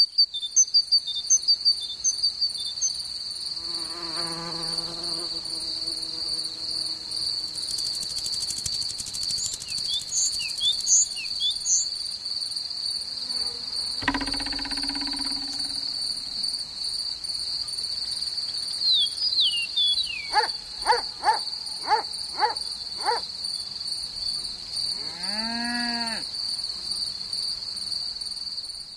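Steady high-pitched cricket trill, overlaid with short high chirps and squeaks. A dull thump comes about 14 seconds in, a quick run of falling chirps around 20 to 23 seconds, and an arching call near 26 seconds.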